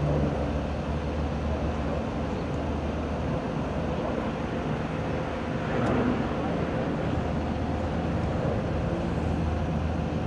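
A steady, low engine hum from a running motor vehicle, with a noisy outdoor haze over it. About six seconds in there is a brief louder swell with a click.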